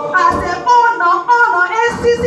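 A crowd of voices singing and calling out together in a hall, loud and a little distorted. Two dull thumps come about a third of a second in and near the end.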